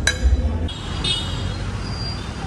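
Road traffic noise: a steady low rumble of cars, after a single ringing clink of tableware right at the start.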